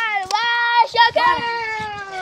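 A child's voice holding a long, drawn-out sung "ohhh", two held notes with the second sinking slowly in pitch near the end.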